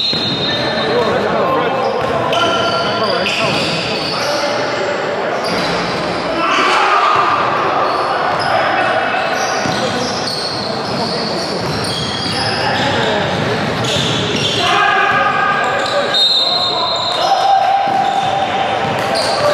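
Basketball bouncing on a hardwood gym floor during play, with players' voices echoing in the large hall.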